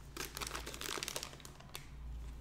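Clear plastic bag crinkling as it is handled, a quick run of irregular soft crackles.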